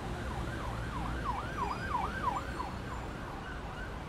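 A siren sounding in fast rising-and-falling sweeps, about three a second, growing louder toward the middle and then fading, over a low steady rumble.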